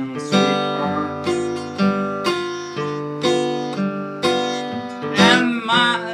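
Epiphone acoustic guitar played solo, an instrumental passage of picked chords and melody notes struck in a steady rhythm and left ringing.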